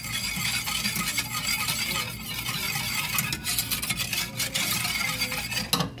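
Wire whisk stirring a milk, sugar and cornstarch mixture in a stainless steel saucepan: a steady run of quick light metal clinks and scrapes against the pan.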